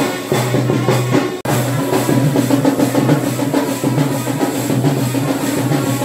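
Traditional temple drumming on chenda drums, fast and dense strokes over a low steady tone, breaking off for an instant about a second and a half in.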